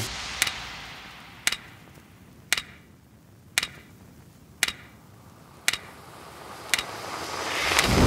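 Sharp ticks about once a second, seven in all, over a faint fading hiss, then a whoosh that swells and rises near the end. These are edited-in soundtrack effects.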